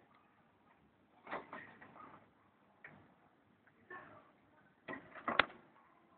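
Wire birdcage being handled: a few scattered clicks and light rattles, the loudest a quick cluster of knocks near the end.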